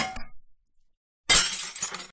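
Small blocks sliding off a tipping seesaw model and clattering down in a quick run of ringing clinks, then about a second later a short, bright crash like breaking glass.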